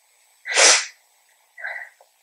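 A person sneezing once, a short sharp burst, followed near the end by a quieter short breath.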